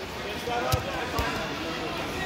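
Two dull thuds, about half a second apart, as wrestlers are taken down onto a foam wrestling mat, over the chatter of voices in a large hall.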